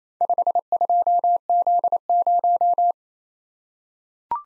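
Morse code sent as a single steady audio tone, keyed on and off at 28 words per minute. It repeats the characters 5, 2, Z, 0 in four quick groups of dits and dahs that stop about three seconds in.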